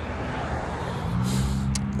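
A motor vehicle, most likely a car, going past on the street, its engine hum growing louder about a second in over steady road noise.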